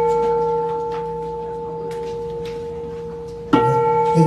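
A Buddhist bowl bell ringing with a clear, steady tone that slowly fades, then struck again near the end.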